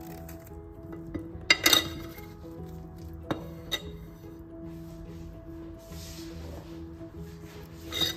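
Soft background music with a few light clinks of a knife and vegetable trimmings on a ceramic plate: two about a second and a half in, two more a little after three seconds, and one at the end.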